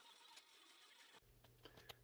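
Near silence: faint room tone with a few faint ticks, and a faint low hum coming in a little past halfway.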